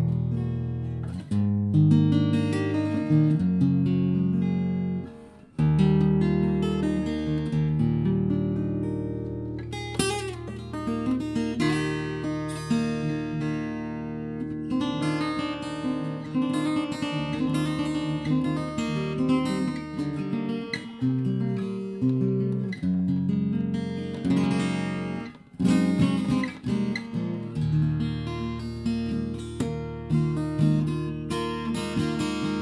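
Ibanez AEG10 acoustic-electric guitar in DADGAD open tuning, played through a small 15-watt amp: picked patterns over a sustained low drone, with short breaks about five seconds in and again near twenty-five seconds.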